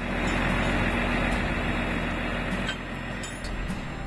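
Pickup truck driving close past, engine and tyre noise starting suddenly and slowly fading as it moves away.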